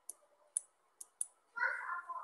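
Four short, sharp computer mouse clicks, the first three about half a second apart, followed near the end by a brief murmur of a voice.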